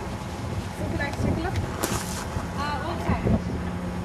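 Wind rumbling on a camcorder microphone, with short snatches of people's voices and a brief hiss about two seconds in.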